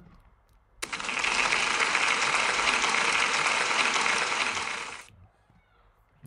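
Applause: steady clapping that starts abruptly about a second in and fades out after about four seconds.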